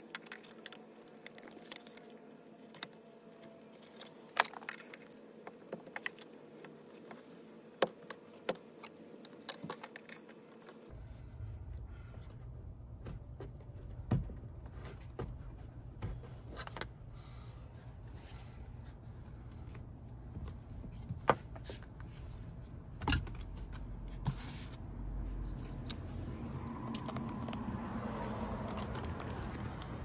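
Scattered light metallic clicks and taps of a screwdriver working against the door hardware of a Jeep Wrangler while prying out the tensioned door check strap arm. A low steady rumble comes in about a third of the way through.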